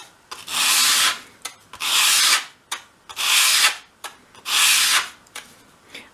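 A thin wooden door piece swept edge-first across sheet sandpaper laid flat: four even, scratchy sanding strokes, each about two-thirds of a second long and about a second and a quarter apart. Each stroke rounds over the door's long edge.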